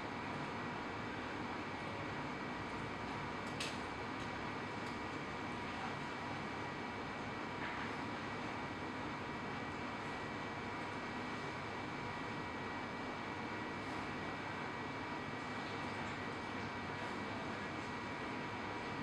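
Steady background hiss with a few faint, thin high tones running through it, and one faint click about three and a half seconds in.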